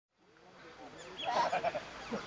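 A group of Asian small-clawed otters calling with many short, high chirps and squeaks. The sound fades in and grows louder about a second in.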